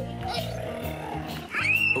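Background music with a young child's playful voice over it, ending in a rising, high-pitched squeal.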